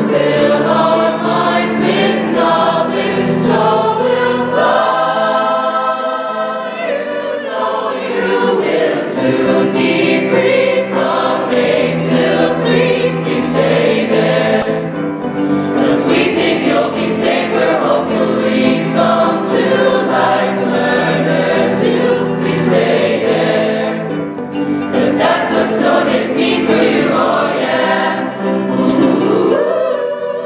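Mixed-voice high-school choir singing a song in harmony, with some chords held for a few seconds.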